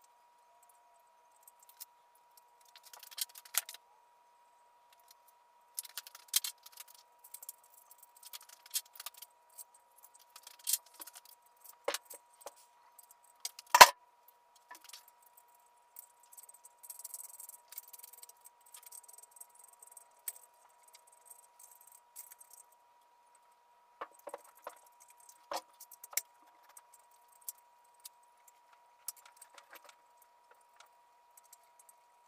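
Scattered metallic clinks, taps and rattles of hand tools and bolts on a Honda K20A3 aluminium cylinder head as the camshaft bearing-cap bolts are fitted. The sharpest knock comes about 14 seconds in. A faint steady tone sits beneath.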